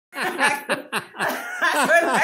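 Laughter in a run of short, quick bursts, about four a second, each falling in pitch.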